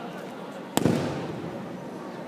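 A judoka being thrown in the nage-no-kata lands on the tatami with a breakfall: one sharp slap and thud on the mat about three-quarters of a second in, echoing in the hall.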